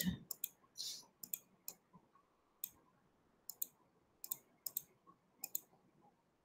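Faint computer mouse clicks, about fifteen short sharp ticks at irregular spacing.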